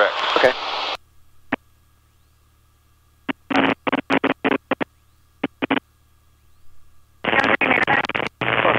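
Cockpit intercom audio: a voice stops about a second in, then only a faint steady hum with short choppy bursts of voice in the middle, and talk starts again near the end.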